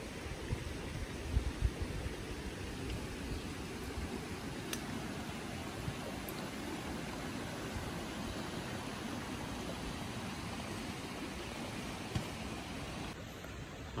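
Steady rush of a shallow, rocky river flowing over stones, with a few low rumbling bumps in the first two seconds.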